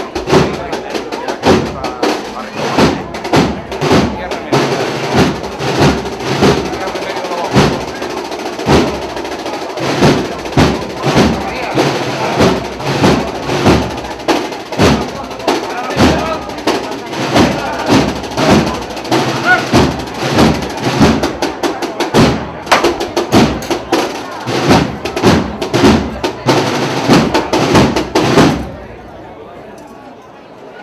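A procession band playing a march, with a steady drumbeat under the melody; the music stops abruptly near the end.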